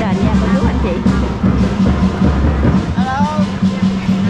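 Loud music playing, with a low steady beat and people's voices mixed in.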